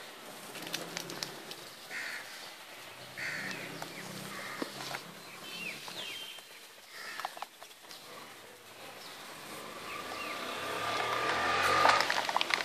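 Birds chirping in short calls outdoors, with scattered clicks, and a rustling noise that grows louder near the end.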